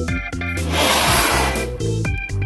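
Organ-like keyboard music, interrupted about halfway through by a loud rush of noise lasting about a second as the butane-filled bag ignites inside the washing machine drum.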